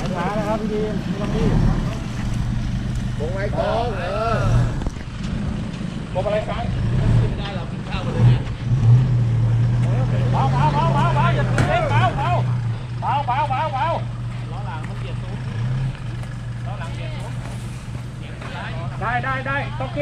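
Pickup truck engine running under load as it crawls up a steep dirt gully, the engine note swelling louder for several seconds in the middle and then settling back. Bystanders' voices call out over it now and then.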